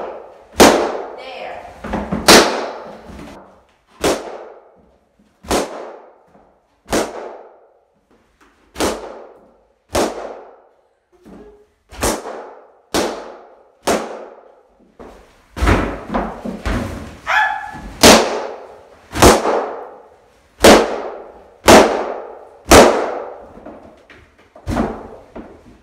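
Latex party balloons bursting one after another as they are stomped underfoot: about eighteen sharp, loud pops, roughly one a second, each with a brief ring of the room after it.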